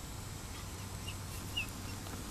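Faint outdoor background with a steady low rumble and two short, high bird chirps about a second and a second and a half in.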